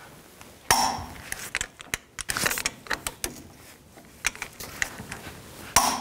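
Click-type torque wrench tightening brake caliper bracket bolts to 221 foot-pounds. There is a sharp metallic clack as the wrench breaks over at the set torque about a second in, and again near the end on the second bolt, with lighter ratchet clicks and metal clinks between.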